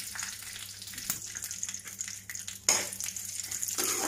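Cashews, almonds and curry leaves sizzling in hot oil in a kadhai, a steady hiss with many small crackles. About two and a half seconds in the sizzling suddenly gets louder.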